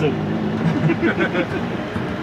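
Lada 2101's four-cylinder engine running steadily while driving, heard inside the cabin under a man's talking and laughter.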